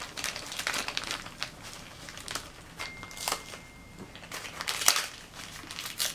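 Crinkly plastic wrapper being torn open and crumpled by hand: an irregular run of sharp crackles and rustles.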